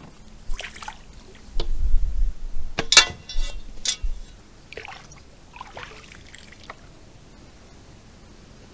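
Handling noises from a plastic fish-measuring board being moved and knocked against the kayak, with dripping water: a series of short knocks and clicks, the sharpest about three seconds in, fading to small clicks later on.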